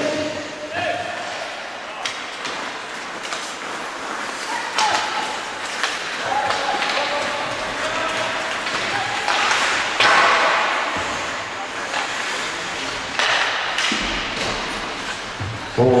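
Ice hockey game sounds: skates scraping the ice and a steady run of knocks from sticks, puck and boards, with faint shouts now and then.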